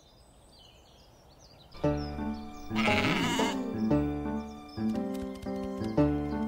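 Cartoon score music starts about two seconds in, with stacked, plucked-sounding notes. A single sheep's bleat comes over it about three seconds in.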